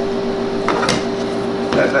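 Steady electrical hum from powered bench test equipment, one constant tone with fainter tones under it, and a brief click about a second in.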